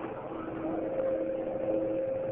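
Steady hiss with a low, steady hum from the old broadcast recording's audio track, and no voice.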